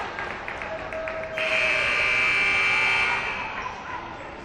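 Basketball arena horn sounds once, a steady electronic buzz for about two seconds starting suddenly just over a second in, signalling a stoppage in play.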